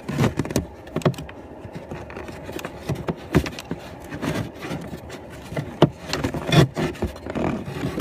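Irregular plastic clicks, knocks and scrapes as a cabin air filter is worked loose and slid out of its plastic housing behind a car's glove box.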